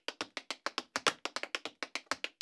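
Tap-dance shoes tapping out a quick, even rhythm of about seven crisp taps a second.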